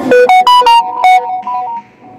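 A short electronic melody: a quick run of bright, synthesizer-like notes, the loudest in the first second, then a few softer notes that stop shortly before two seconds in.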